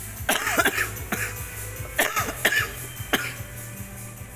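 A person coughing repeatedly, in two bouts of sharp bursts, over steady background music.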